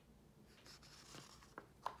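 Page of a hardcover picture book being turned: a soft, faint paper rustle, then two light clicks near the end.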